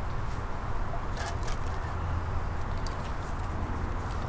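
Steady outdoor background noise with a low rumble, and a few faint clicks.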